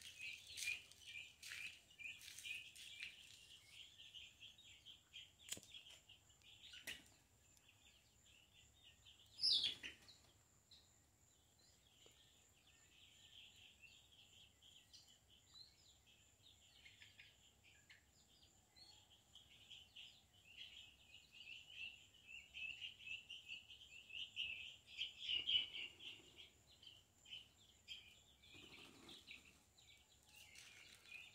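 Birds chirping steadily, a dense run of quick high chirps that is busiest near the start and again late on, with one louder falling call a little before ten seconds in.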